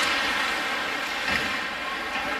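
Ice hockey rink ambience: a steady wash of noise from skates on the ice and the arena around the play.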